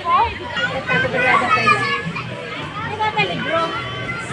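Children shouting and chattering as they play, many high voices overlapping.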